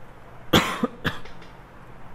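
A man coughing: one sharp cough about half a second in, followed by two smaller coughs.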